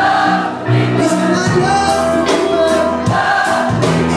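Live pop band playing loudly with several voices singing, recorded on a phone from within the concert audience. Held bass notes sit under the song, with drum and cymbal hits through it.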